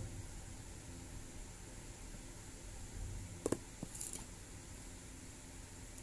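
Faint handling noise of hands working fine cotton thread with a crochet hook, then a sharp click and a lighter second click about three and a half seconds in, followed by a brief high hiss, as the tools are put down and picked up.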